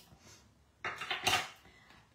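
A brief clatter of hard craft supplies being handled and moved on a desk, loudest a little past the middle.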